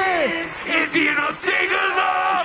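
Live metalcore band playing: electric guitar with a male voice singing and yelling, and a falling pitch slide right at the start.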